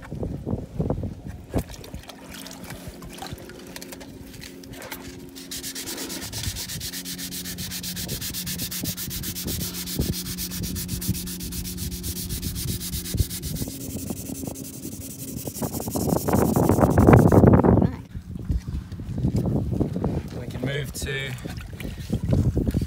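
A fiberglass boat's gel coat being hand-sanded with a sanding block and 400-grit wet-and-dry paper: a steady scratching of quick back-and-forth strokes from about five seconds in to about fifteen seconds. A louder, lower rubbing noise follows near the end, with scattered knocks before the sanding starts.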